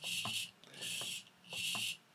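Small hobby RC servo whirring in three short bursts, each about half a second, as it tilts the FPV camera in step with the transmitter's elevator stick.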